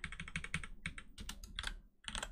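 Computer keyboard being typed on: a quick run of key clicks that thins out and stops briefly near the end.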